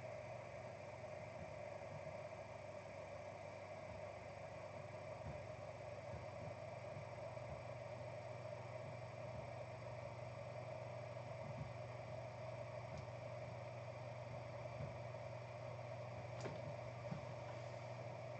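Quiet room tone: a faint steady hum with a few soft clicks near the end.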